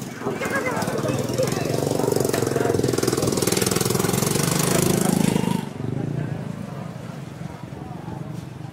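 A small engine running close by with a rapid rattling pulse, cutting off suddenly about five and a half seconds in, over the voices of a busy street market.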